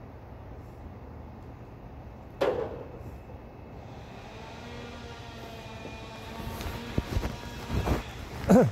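Outdoor ambience with a steady low rumble, broken by a single sharp bang about two and a half seconds in and a few knocks and thumps near the end.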